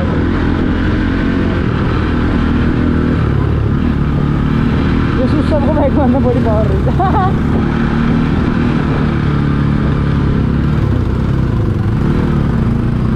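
Motorcycle engine running steadily while the bike is ridden, heard up close from the rider's seat.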